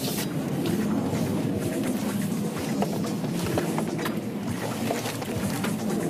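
Steady road and tyre noise of a Toyota Alphard hybrid minivan driving through a slalom, under background music.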